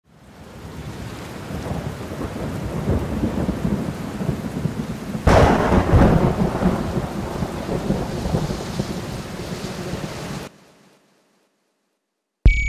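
Thunderstorm sound effect: steady rain that builds up, then a sharp thunderclap about five seconds in with rolling rumble after it. It cuts off suddenly near the end.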